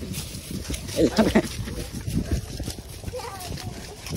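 Short bursts of people's voices over a low rumble and scattered knocks from horses walking through grass.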